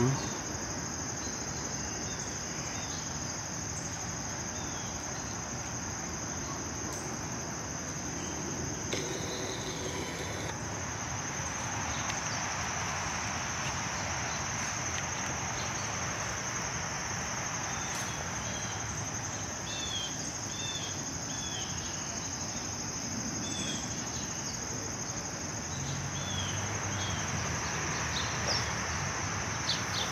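Steady high-pitched insect chorus, one unbroken shrill tone, over a low outdoor hiss, with a few short chirps in the second half.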